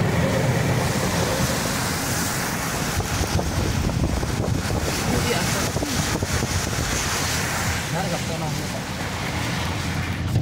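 Steady rushing road noise from a car driving on a rain-soaked road: tyres hissing through standing water, with wind noise on the microphone.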